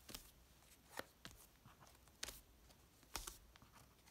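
Faint handling of paper envelope flaps on a file-folder junk journal cover as they are folded closed: about half a dozen soft, short paper taps and rustles against a quiet room.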